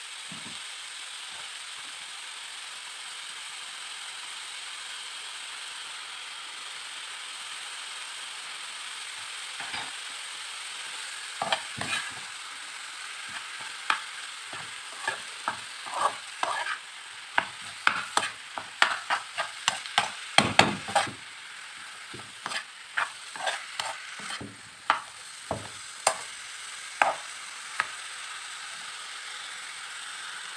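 Minced meat, onions and spices frying in a pan with a steady sizzle, while a metal spoon stirs and scrapes, clinking and knocking against the pan. The spoon strokes begin about a third of the way in and are busiest in the middle.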